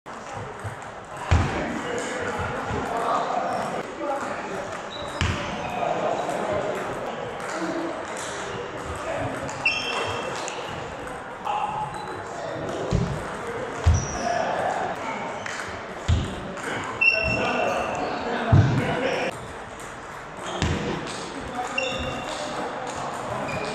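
Table tennis play in a large hall: a plastic ball clicking off bats and the table in short rallies, with occasional heavier thuds and brief shoe squeaks on the wooden sports floor. The hall's echo carries indistinct chatter from other players and spectators underneath.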